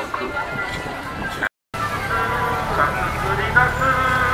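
Amplified voice and music from a campaign van's horn loudspeakers over city traffic rumble, with held sung notes; the sound cuts out for a moment about a second and a half in.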